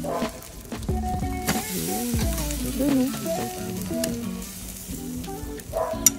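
Chicken wings and a whole fish sizzling over hot charcoal on a small kettle grill, with a few sharp clicks of metal on the grate. Music with a stepping melody plays over it.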